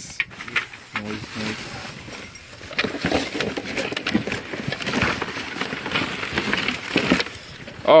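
Plastic bags and tissue paper rustling and crinkling as hands dig through trash, in an uneven run of crackles with no steady rhythm.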